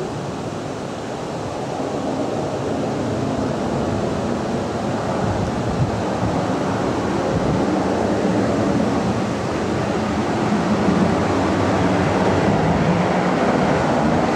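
Steady rumble of an approaching airliner's engines that grows gradually louder, mixed with wind noise on the microphone.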